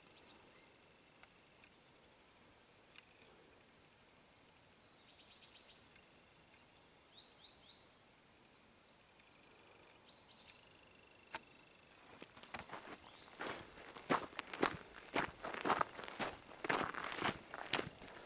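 Quiet open-air stillness with a few faint, short bird chirps. From about twelve seconds in, footsteps start crunching on a gravel road and grow loud and steady.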